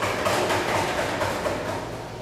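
Brief round of applause from a small group of people, a dense patter of claps that dies away near the end.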